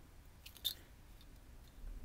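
Mostly quiet, with one faint, short click just over half a second in from the steel paper clip wire being handled and bent straight.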